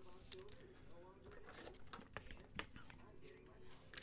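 Near silence, with a few faint clicks and light rustles of trading cards being handled.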